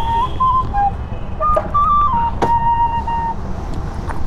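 Bansuri (bamboo flute) played live: a slow, simple melody of held notes moving up and down in small steps, with one long held note in the second half. Underneath is a steady low rumble, with a sharp click about two and a half seconds in.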